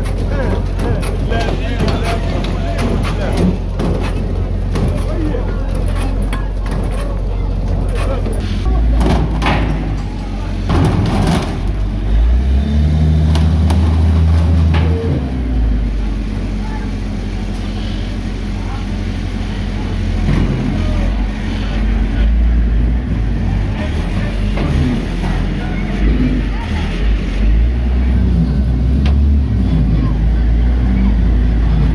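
Diesel engine of a Hyundai HL740-7A wheel loader running close by, louder and heavier from about twelve seconds in, with people's voices over it.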